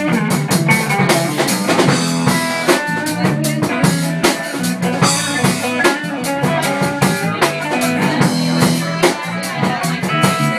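A live band playing an instrumental stretch with no vocals: electric bass and electric guitar over a drum kit keeping a steady beat.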